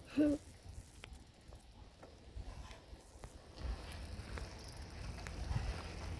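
Quiet, with a short voiced hum at the very start, then a faint low rumble that grows a little about three and a half seconds in.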